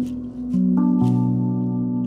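RAV steel tongue drum, tuned to B Celtic double ding, playing slow notes that ring on and overlap. New notes are struck about half a second, three-quarters of a second and one second in. Soft short drip-like clicks sound over them.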